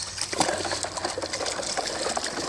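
An English springer spaniel nosing around inside a plastic tub while searching for a stone: a fast, steady rattling and scuffling.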